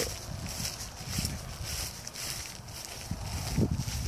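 Phone-microphone outdoor ambience: irregular low wind rumble and handling noise as the phone is carried across grass, over a faint steady high hiss. There is a small brief sound about three and a half seconds in.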